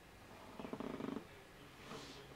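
A faint, short chuckle of about half a second, a soft pulsing breath through the nose, over low room tone.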